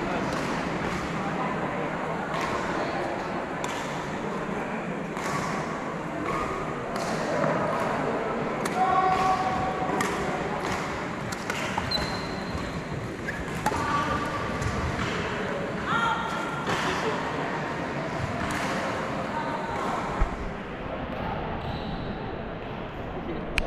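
Wheelchair badminton rally in a reverberant gym hall: sharp racket strikes on the shuttlecock, repeated every second or two, and brief squeaks on the wooden floor, over a steady murmur of voices.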